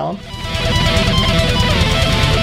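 Highly distorted electric guitar playing a fast lead run in the modular picking style, a rapid even stream of notes that fades in during the first half second.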